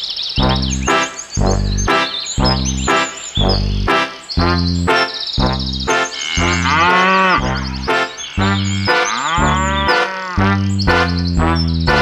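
Cheerful children's background music with a steady bass beat and tinkling high notes. Two long cartoon cow moos come in over it, about six and nine seconds in, each rising then falling in pitch.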